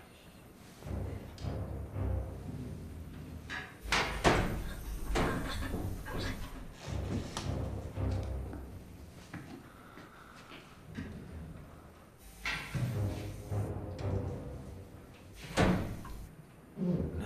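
Film score music with several heavy thuds and slams in the mix, the loudest hit about four seconds in and another near the end.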